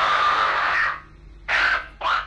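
A man screaming in a harsh, raspy voice: one long scream that breaks off about a second in, then a shorter second shout near the end.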